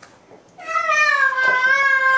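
A cat giving one long, drawn-out meow that starts about half a second in, its pitch sagging slowly as it goes.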